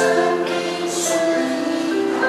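Women's choir singing in parts, several voices holding and moving between sustained notes in harmony, with two short hissing consonants, one at the start and one about a second in.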